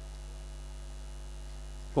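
Steady low electrical mains hum from the stage sound system, a constant drone with evenly spaced overtones that does not change.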